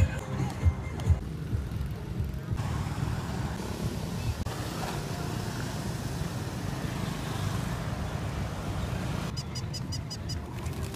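Outdoor street ambience: passing motorbike and road traffic with distant voices, under a heavy, fluctuating wind rumble on the microphone, with a few thumps in the first two seconds.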